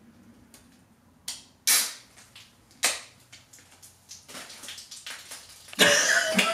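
Aerosol spray can being handled: a few sharp clicks, each with a short hiss, then a denser run of rattling clicks and a loud burst near the end.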